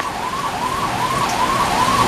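Heavy rain falling, with a siren or alarm sweeping up and down in pitch about two and a half times a second.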